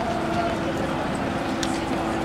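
Trolleybus interior: a steady, even hum, with indistinct voices in the background.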